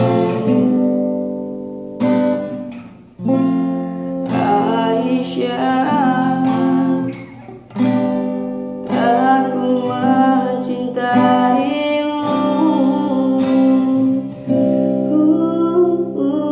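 Acoustic guitar strummed in chords while a solo voice sings along, with the strumming dropping away briefly twice before fresh strums come in.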